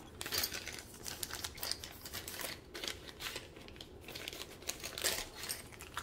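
Clear plastic packaging bag of a diamond painting toolkit crinkling as it is handled, a run of soft irregular crackles.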